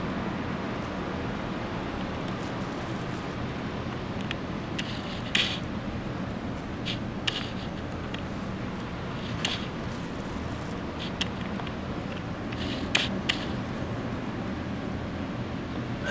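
Steady low hum of room background noise, with a handful of short, faint clicks and scrapes scattered through it. The clearest come about five seconds in and again about thirteen seconds in.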